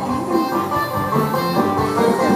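Taiwanese opera (gezaixi) accompaniment ensemble playing an instrumental passage with plucked strings, a short interlude between sung lines.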